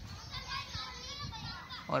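Faint, distant children's voices calling out, with a low rumble underneath.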